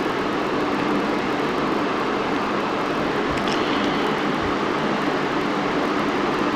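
Steady background hiss with a faint low hum, even and unchanging, with no speech.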